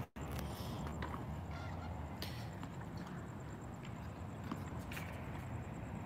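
Quiet background noise with a few faint, sharp knocks, the clearest about two seconds in and another near five seconds: a tennis ball being hit with a racket and bouncing on a hard court during a rally.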